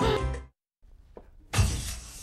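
Organ-like soundtrack music cuts off abruptly about half a second in. After a moment of near quiet, a sudden loud crash comes about a second and a half in and dies away over about half a second.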